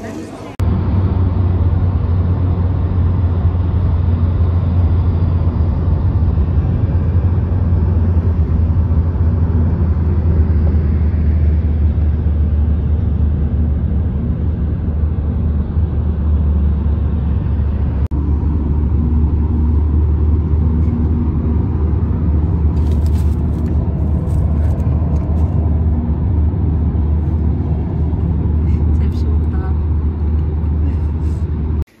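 Road noise inside a moving car's cabin: a steady, loud low rumble of engine and tyres that starts abruptly about half a second in.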